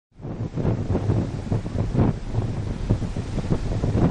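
Wind buffeting the microphone in uneven gusts, a loud low rumble.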